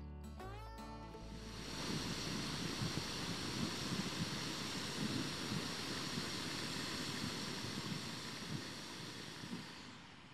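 Guitar music dies away in the first second or so. Then a Jetboil canister gas stove burns steadily: an even hiss over a low, fluttering flame rumble, easing off just before the end.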